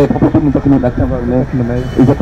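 A man talking into a handheld microphone, over a steady low background rumble.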